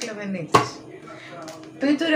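A single sharp knock about half a second in: a container set down on a kitchen counter.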